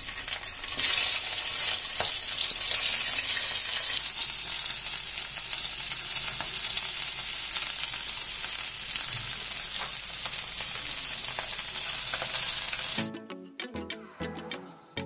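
Large prawns frying in hot oil in a frying pan: a steady, dense crackling sizzle. It cuts off suddenly about a second before the end, and background music with a beat takes over.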